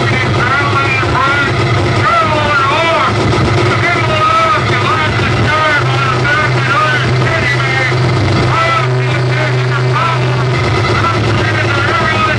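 Live electronic noise music from synthesizers and effects: a loud, continuous low drone that strengthens about halfway through, under warbling tones that keep swooping up and down in pitch.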